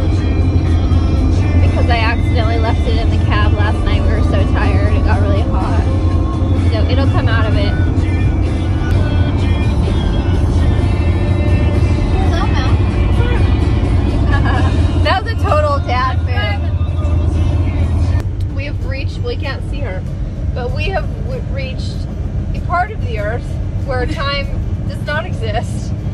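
A song with a singing voice, over the steady low drone of a vehicle on the road; the drone drops away about two-thirds of the way through.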